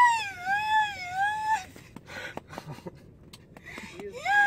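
A young woman's long, high-pitched, wavering cry of excitement lasting about a second and a half, followed by a few faint clicks.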